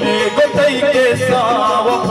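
Male voice singing a Balochi song with wavering, ornamented held notes, accompanied by harmonium and low hand-drum strokes.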